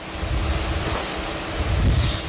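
Sawmill band saw running while a log is fed into it: a loud, steady rushing noise with a low rumble and a faint steady hum, swelling louder near the end.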